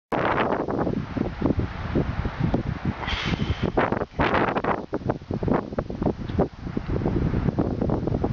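Wind buffeting the microphone in loud, uneven gusts.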